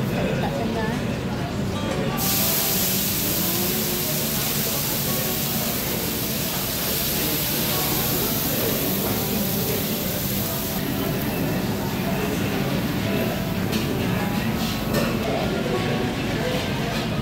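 Restaurant ambience: background chatter of other diners with music. A steady hiss starts suddenly about two seconds in and cuts off about eleven seconds in.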